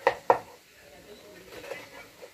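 A kitchen knife chopping pineapple on a wooden cutting board: two sharp knocks of the blade on the board, a quarter second apart, right at the start, then quieter cutting sounds.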